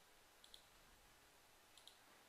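Two faint computer mouse clicks, each a quick press-and-release double tick, about half a second in and near the end, over near silence.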